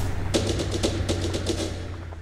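Electronic soundtrack music: a rapid ticking percussion line, about seven clicks a second, over a low sustained bass, fading near the end.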